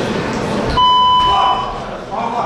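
Timekeeper's electronic buzzer sounding one steady, loud tone for about a second, signalling the end of the round, over the noise of a crowd of voices in the hall.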